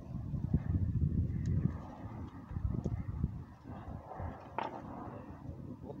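Uneven low rumble of wind on the microphone, with light rustling and small clicks from food and a plastic roasting bag being handled; one louder rustle about four and a half seconds in.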